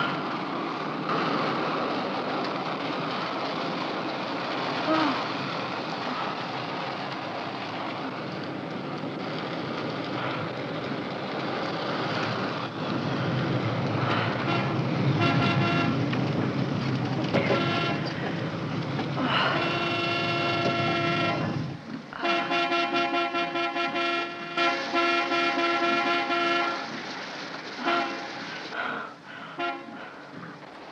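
The steady rush of a car driving in rain, then a vehicle horn sounding in repeated long blasts, starting about halfway through and coming thickest near the end.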